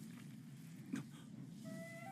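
Faint sound from the anime episode playing: a low murmur with a brief tick about a second in, then a held high tone that starts near the end.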